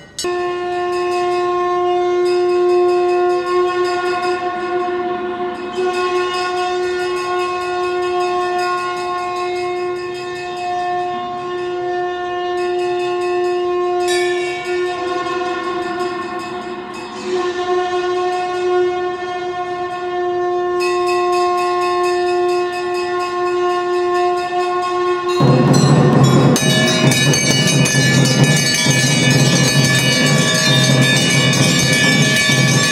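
A single steady, horn-like tone is held for about twenty-five seconds, wavering twice. Near the end, a louder dense clanging of large brass temple bells being rung by hand suddenly takes over.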